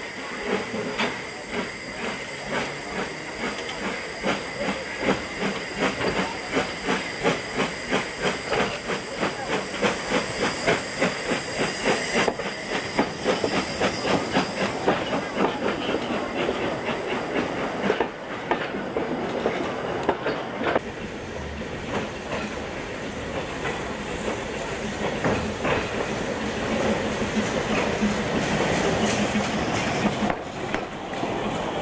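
Narrow-gauge steam locomotive 'Plettenberg' working, its exhaust beating in a steady rhythm over a hiss of steam. The beats come faster through the first half, from about two a second to about three, then blur into a more even hiss and rumble.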